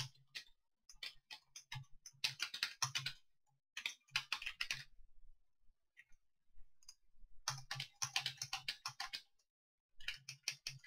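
Computer keyboard typing in quick bursts of keystrokes, with a pause of about two seconds past the middle.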